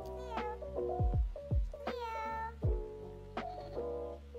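Background music with a deep kick drum, and over it a small puppy whimpering: a short high whine near the start and a longer one about two seconds in.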